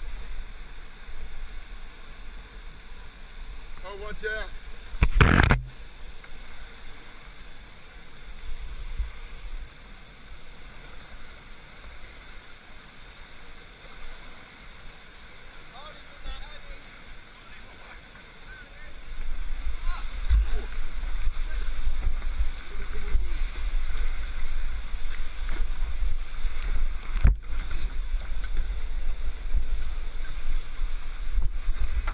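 Whitewater rapids rushing around a kayak, with low rumbling wind noise on the microphone. A brief loud thump comes about five seconds in, and the water noise grows much louder from about two-thirds of the way through.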